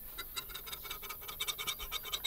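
Knife blade scraping along the fluted rim of a metal tart tin, trimming off the overhanging pastry: a quick run of short scratches, several a second, with a light metallic ring.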